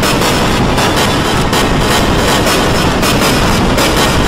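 Loud, dense noise from many soundtracks played over one another, with music buried in the mix and no clear single tone standing out.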